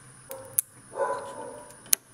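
A dog barks once, about a second in, with a few sharp clicks before and after it.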